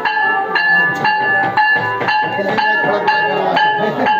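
A ringing metal instrument struck in a steady beat, about two strikes a second, each note ringing on briefly, with the voices of a crowd underneath.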